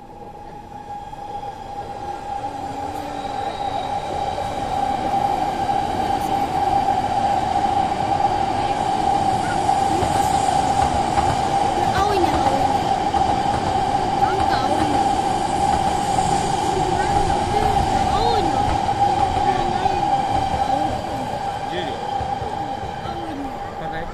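Shinkansen and commuter trains running along the tracks below. The rumble builds over the first few seconds, stays loud through the middle and eases near the end. A steady high whine runs throughout, with brief squeals over it.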